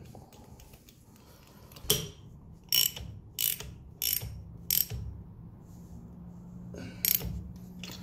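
A hand-held spark plug socket wrench ratcheting as a new spark plug is tightened by hand into a motorcycle cylinder head. About six sharp clicks, roughly two-thirds of a second apart, with a longer pause before the last one.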